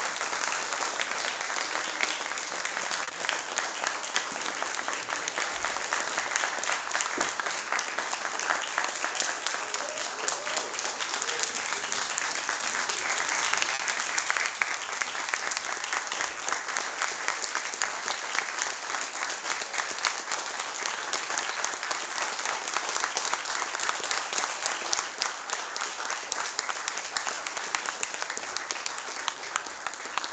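An audience applauding: long, dense clapping that goes on throughout and thins slightly near the end.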